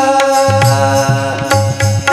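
Marathi devotional abhang (bhajan) music: a steady held note rings over a regular drum beat, about two beats a second, with sharp strikes in between. The wavering singing voice drops out here and picks up again right at the end.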